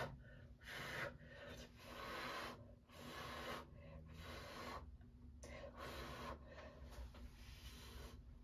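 A person blowing by mouth onto wet acrylic paint on a canvas to push it into thin tendrils: a series of short puffs of breath, about one a second, each lasting half a second to a second.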